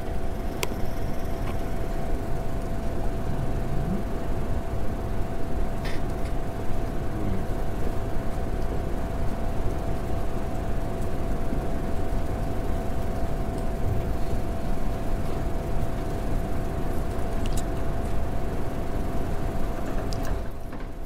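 Steady room noise with a constant low hum running under it, broken by a few short, sharp clicks.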